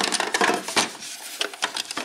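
Plastic LEGO Duplo bricks clattering and knocking against each other in a cardboard box as a hand rummages through them: a quick irregular run of clicks and knocks.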